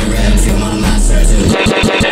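Emo rap instrumental beat with a heavy sub-bass that cuts out about one and a half seconds in, followed by a few quick low hits.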